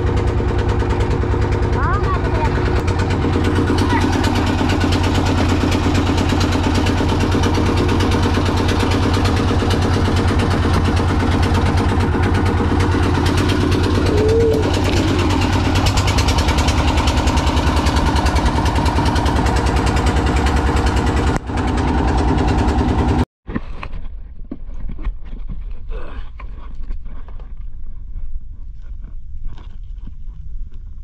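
A small wooden boat's engine running steadily under way. About three-quarters of the way through it cuts off abruptly, leaving a quieter stretch of irregular small knocks and splashes.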